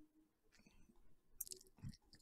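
Near silence: room tone with a few faint, short clicks, the sharpest about one and a half seconds in.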